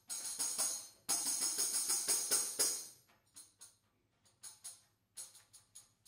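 Two tambourines played in a duet with fingers and hands: fast flurries of strokes with ringing jingles for about the first three seconds, then quieter, sparser taps separated by short pauses.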